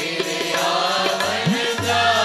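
Sikh kirtan music: a steady harmonium drone with tabla, the tabla's bass drum gliding up in pitch about one and a half seconds in.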